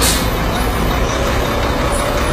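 Heavy truck running close by on the road: a loud steady rumble with hiss.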